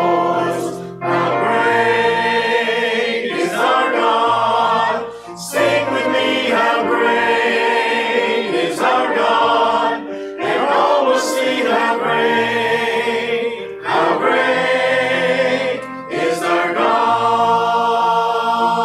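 Mixed church choir singing a hymn in phrases, with short breaths between lines every few seconds.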